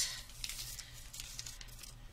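Clear plastic packaging crinkling and rustling in faint, scattered crackles with a few light clicks as it is pulled off a small bottle.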